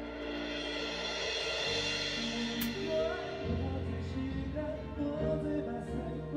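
Live band music with sustained chords and a bass line over a drum kit, with a cymbal crash about two and a half seconds in.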